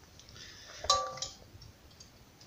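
A single sharp knock about a second in, followed by a brief ringing tone that dies away within half a second.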